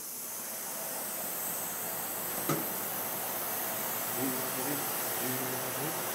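Steady hiss of CNC machinery running in a machine shop, with one faint click about two and a half seconds in.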